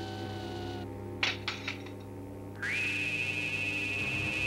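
Cartoon machine sound effects over a low steady drone: a short falling tone, three quick mechanical clanks about a second in, then an electronic whine that slides up and holds a steady high pitch, as the robotic arms beam at the device.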